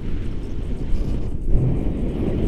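Wind buffeting the microphone of a hand-held camera during tandem paraglider flight: a loud, uneven low rumble.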